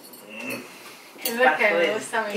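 Cutlery clinking against plates at a dinner table. A person's voice starts about halfway through.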